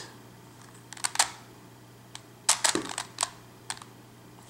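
Circle Crystal Pyraminx twisty puzzle being turned by hand, its plastic faces clicking as they rotate: two clicks about a second in, then a run of about five more.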